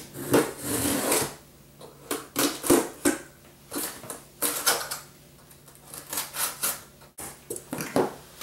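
Cardboard shipping box being slit open with a blade and its flaps pulled back: irregular scrapes, tape tearing and cardboard rustles.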